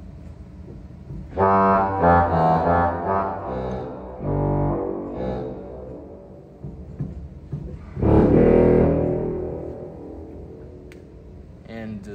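Low pipe-organ reed, the pedal 16-foot Trombone of a 1926 Estey organ: a short run of notes, then one loud note about eight seconds in that fades away over a couple of seconds.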